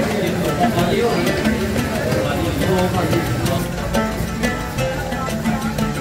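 Background music laid over the video, with voices beneath it.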